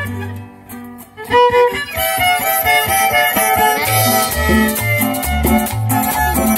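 Live violin with strummed acoustic guitars and bass starting the instrumental introduction to a hymn. A couple of held chords come first, then about two seconds in the full band comes in, with the violin playing a running melody over the guitar strumming and alternating bass notes.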